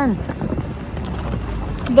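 Wind buffeting a phone's microphone outdoors: a steady low rumble, after the falling tail of a woman's word at the very start.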